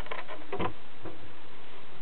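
Steady background hiss with a few light rustles and ticks, the strongest about half a second in, ending in a sudden sharp click.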